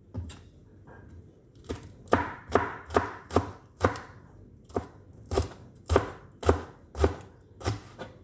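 Chef's knife chopping green chilies on a cutting board: a run of sharp cuts at about two a second, starting a couple of seconds in, with a brief pause midway.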